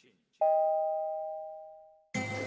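Elevator arrival chime: a single bell-like ding about half a second in, two tones sounding together and dying away over about a second and a half.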